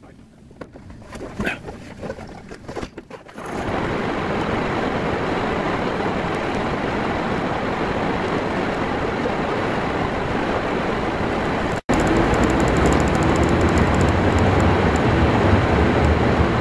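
Inside a car's cabin: a few light clicks and knocks, then, about three and a half seconds in, a steady rush of air starts as the heater/defroster blower runs to clear a frozen windshield over the running car. Near the end the sound drops out for an instant and comes back louder, with a low engine hum as the car drives off.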